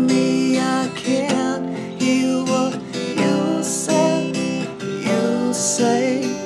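Acoustic guitar strummed in a steady rhythm through a C–F chord change, moving toward G and E minor near the end. A man's voice sings over it in places.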